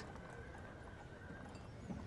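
Faint, quiet background ambience with no clear source, and a soft knock just before the end.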